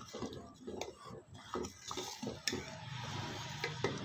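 A metal ladle stirring thick, cooked-down kheer in a steel pot, with repeated short strokes scraping the pot's sides and bottom. A low steady hum runs under the strokes in the second half.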